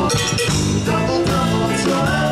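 A live band playing a rock-and-roll style tune, with accordion, guitars and a drum kit.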